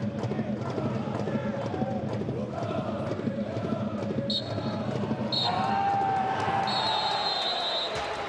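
Football stadium crowd chanting and shouting, with a referee's whistle blowing two short blasts and then one long one near the end: the final whistle.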